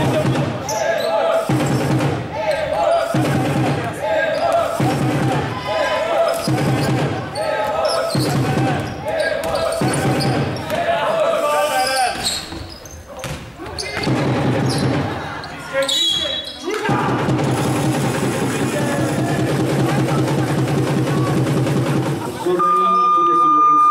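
Spectators chanting a short repeated call, about one every second and a half, echoing in a sports hall, with a basketball being dribbled on the court. The chant breaks off about halfway through, then gives way to a long held voiced sound near the end.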